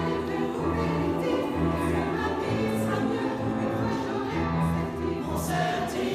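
Mixed amateur choir singing in parts, sustained chords ringing in the reverberant stone nave of a church.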